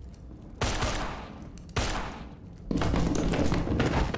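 Gunfire from a TV action shootout: a heavy shot about half a second in, another just under two seconds in, then a sustained volley of shots from about three seconds on.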